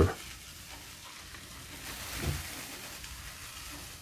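Printing paper being slowly peeled off a painted Gelli gel printing plate, where the paint holds it fast: a faint, sticky crackling hiss that swells about two seconds in.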